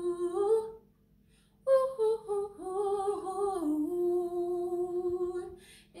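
A young woman singing unaccompanied. A held note breaks off about a second in, and after a short pause comes a long wordless run of gliding notes that settles on a held note, followed by a quick breath near the end.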